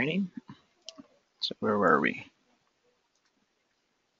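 Two brief stretches of a person's voice, one at the start and one about two seconds in, with a few small sharp clicks between them.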